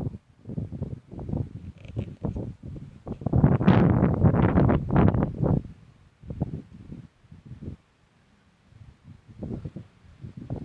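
Wind buffeting the microphone in irregular gusts of rumbling noise, heaviest for a couple of seconds in the middle.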